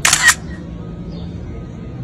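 A short, sharp hissing burst lasting about a third of a second right at the start, with two peaks, followed by a faint low steady hum.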